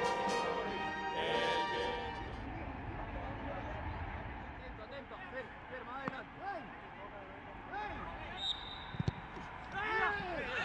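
The closing bars of a national anthem, orchestra and voices, fade out in the first two seconds. Then the ambience of an empty stadium, with short shouts from players on the pitch from about halfway through and a sharp thump near the end.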